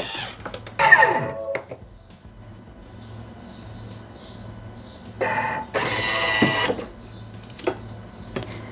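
Thermomix TM6 blade spinning down with a falling whine about a second in, after milling sugar at speed 10. Later the machine makes two short mechanical whirrs, followed by a click near the end.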